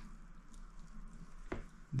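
Faint handling noise of two small metal flashlights being moved in the hands, with one faint click about one and a half seconds in.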